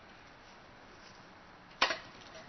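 Low background hush, then one sharp knock near the end as a clamshell post-hole digger is driven into the ground.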